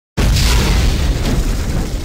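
A deep cinematic boom sound effect hits suddenly just after the start and slowly dies away.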